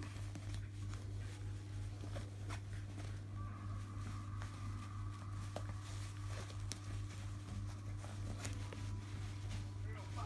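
A steady low electrical-sounding hum with small scattered clicks and rustles, and a faint thin tone in the middle part.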